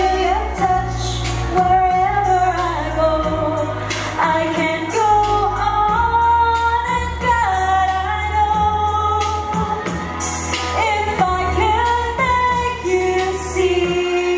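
A woman singing a pop song live into a microphone over backing music with a steady bass line.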